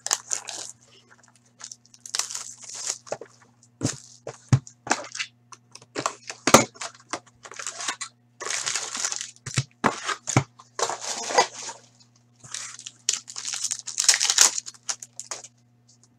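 A cardboard trading-card box being opened and its foil card packs torn open and crinkled: irregular bursts of tearing and crinkling, broken by sharp clicks and taps of cardboard.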